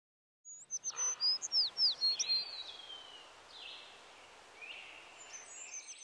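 Wild songbirds singing: starting about half a second in, a quick run of high, down-slurred whistled notes, then fainter, scattered calls.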